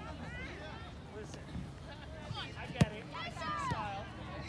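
Distant shouting from players and sideline voices across an outdoor soccer field, with one sharp thud about three-quarters of the way through, a soccer ball being kicked.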